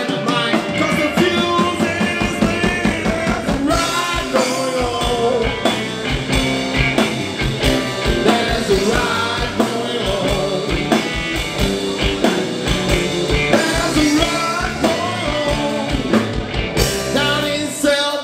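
A live blues-rock band playing an uptempo rock and roll number: drum kit, bass guitar and electric guitars, with a male lead vocal.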